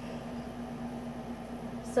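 Air conditioner running: a steady hum with a constant low tone and a faint even hiss.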